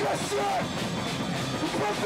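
Live rock band playing loudly: electric guitar, bass and drum kit, with vocals shouted into the microphone.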